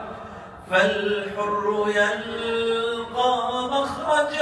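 A man singing unaccompanied in Arabic into a handheld microphone. He comes in about a second in after a short pause and holds long, sustained notes.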